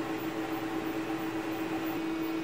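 A steady buzzing tone with overtones over a hiss, from a glowing plasma tube driven by two slightly detuned square-wave frequencies.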